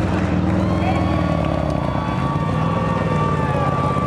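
Speedway sidecar outfits' engines running on the dirt track, a steady engine note with a long held high whine over it.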